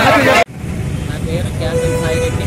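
Loud overlapping voices of a protesting crowd, cut off abruptly about half a second in. After the cut there is a steady low rumble, and a man's voice starts faintly with a drawn-out sound near the end.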